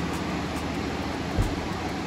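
Steady rushing noise, like air moving through a room fan or air-conditioning unit, with a single low thump about one and a half seconds in.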